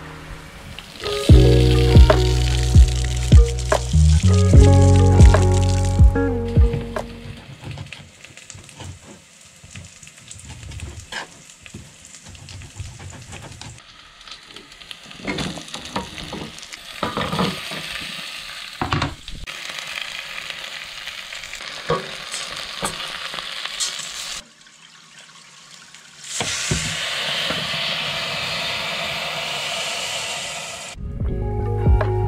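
Background music plays loudly for the first several seconds. Food then sizzles as it fries in a pot on a gas stove, with sharp clinks and knocks as pieces are tipped in from a cutting board and stirred with a wooden spoon. Near the end there is a steady hiss.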